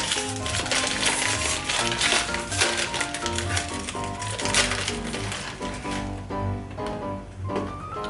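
Background music with a steady bass pattern, over the crinkling of a foil snack bag being torn open and handled, which eases off after about six seconds.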